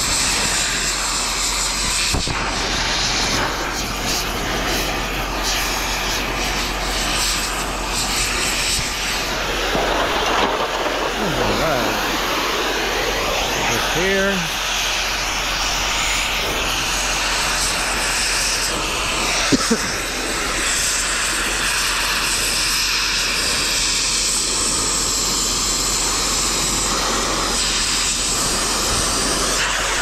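Oxy-fuel cutting torch burning with a steady hiss as it cuts through scrap metal.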